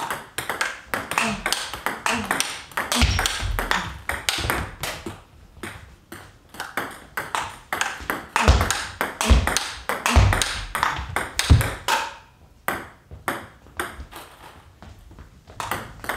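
A fast table tennis rally: the ball clicks sharply off the paddle rubbers and bounces on the table several times a second, with a few dull thumps mixed in. The hitting thins out in the last few seconds.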